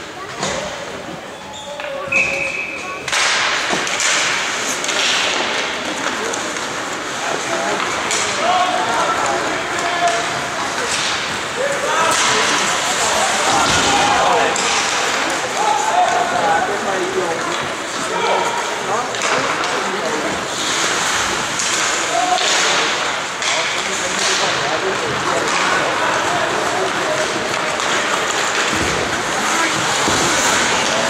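Ice hockey play: skates scraping on the ice, knocks of sticks, puck and boards, and players' voices calling out. It grows louder about three seconds in as play gets going.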